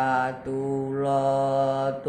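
A boy singing macapat Gambuh, a Javanese sung verse, unaccompanied: a long held vowel on a steady pitch, moving to a new note about half a second in and again near the end.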